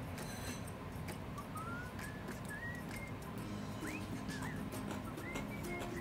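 Soft background music: sustained low notes with a thin whistled melody gliding above them.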